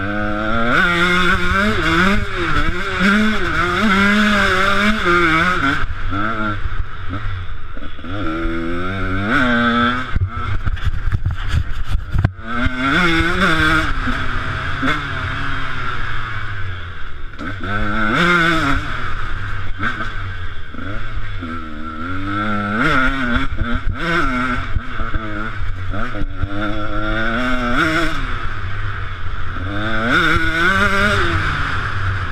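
KTM 125 SX single-cylinder two-stroke motocross engine under hard riding, its pitch rising and falling over and over as the throttle is worked through the gears, with a brief drop about twelve seconds in.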